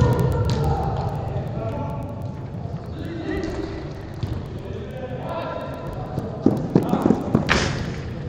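Indoor five-a-side football game in a large echoing hall: players shouting to each other, with a quick run of sharp thuds from the ball and play a little after six seconds in.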